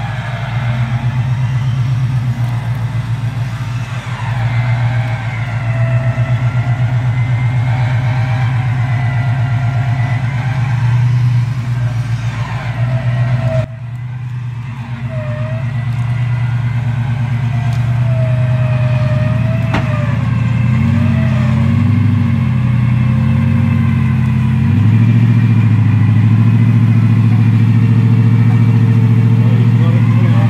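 Nissan Patrol Y62's V8 engine running steadily under load as it drags itself and the caravan out of a bog hole, with a whine that wavers up and down in pitch over it. The sound breaks off suddenly about halfway through, then carries on.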